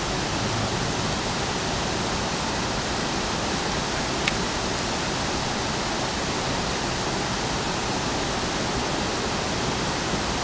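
A steady, even rushing hiss with no rhythm or change, and a single brief click about four seconds in.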